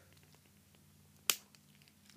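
A single sharp click of the action figure's plastic ab-crunch ratchet joint as it is forced forward by hand, about a second in; the joint is very stiff.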